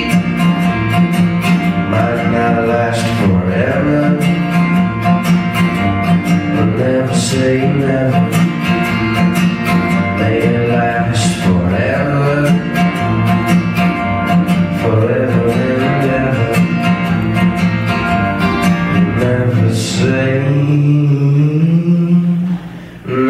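Acoustic guitar strummed steadily in a closing instrumental passage of a live folk song.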